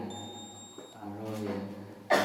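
A man talking into a handheld microphone, with pauses between words. A faint, steady, high-pitched electronic tone sounds through the first second and a low hum runs underneath.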